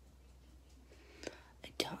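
Faint room tone for about a second, then a woman speaking softly, almost in a whisper.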